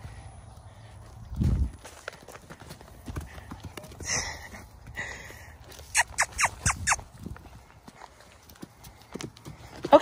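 Horses moving about a sand paddock: scattered soft hoof steps, with a dull thump about a second and a half in. Around six seconds in comes a quick run of five short, high calls.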